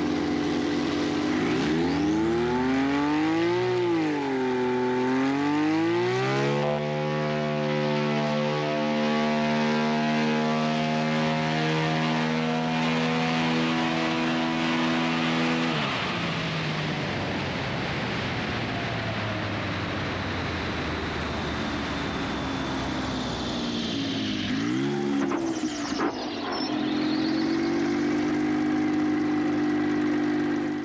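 Single-engine bush plane's piston engine and propeller on the runway. It revs up and down, then holds a steady high-power run. About halfway through it is throttled back and winds down, then a brief rev near the end leads into a steadier, lower run.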